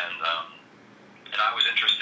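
A man talking, with a short pause near the middle; the voice sounds thin, with little high end.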